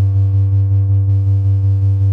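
Minimal electronic synthesizer music: a held synth bass note and chord pulsing about five times a second, with no drums.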